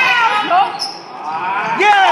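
Indoor basketball game: a ball bouncing on the hardwood gym floor under shouting voices from players and spectators, the voices dropping off about a second in and picking up again near the end.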